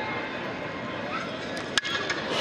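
Steady low ballpark crowd murmur, then near the end a single sharp crack of a wooden baseball bat hitting a pitched ball squarely: a well-struck drive that carries for a home run.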